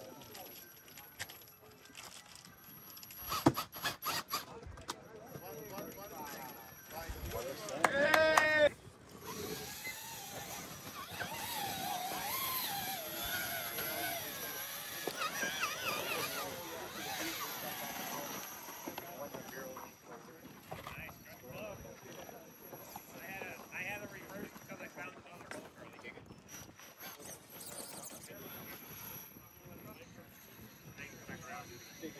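Indistinct voices of onlookers talking in the background, with a few sharp knocks about four seconds in and a brief loud high-pitched sound near eight seconds.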